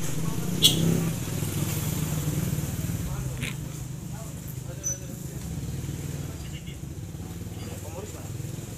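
Small motorcycle engine idling with a steady low rumble that eases a little after about three seconds, with a couple of sharp clicks.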